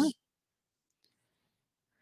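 The end of a spoken "yeah", then near silence.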